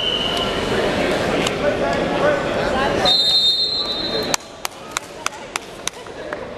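Gym crowd chatter, then a high, steady referee's whistle blast about three seconds in, lasting about a second. After an abrupt drop in level, a run of sharp knocks comes about three a second.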